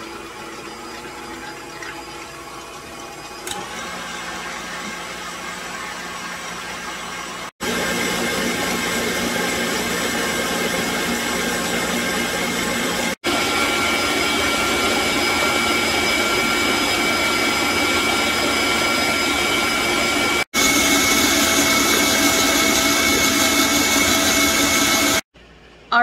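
KitchenAid Classic Plus stand mixer running at medium-high speed, its wire whisk beating egg yolks and sugar in a stainless steel bowl. A steady motor whine with the whisk rattling, growing louder in a few steps, with several sudden short breaks.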